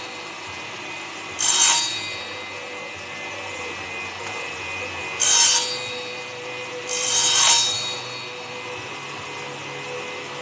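Table saw running with a steady hum, its blade cutting small pieces of wood three times. Each cut is a short bright rasp of half a second to about a second, and the last one is the longest.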